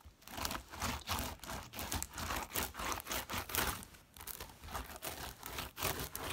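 White slime being kneaded and pressed by hand on a tabletop: a quick, irregular run of sticky crackles and pops that starts just after the beginning.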